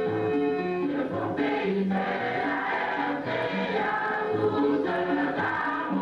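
Background music: a choir singing held notes that change pitch in steps.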